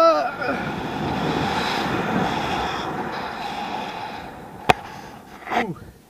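Wind rushing over the camera microphone during a rope-jump free fall: a loud steady rush that slowly fades over about four seconds as the rope takes the fall. It opens with a short yell at the jump, a single sharp click comes near the end, and the jumper lets out a gasped 'ух' at the very end.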